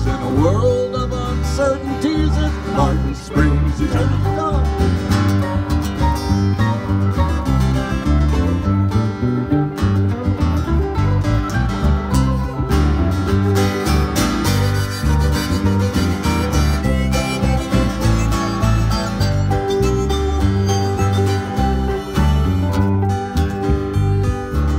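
Acoustic band playing an instrumental break in a country style, led by guitar over a changing low bass line, with no singing.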